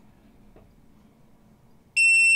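Quiet room tone with a faint click about half a second in, then right at the end a loud, high-pitched electronic beep starts from the chip programmer, signalling that its read of the chip has finished.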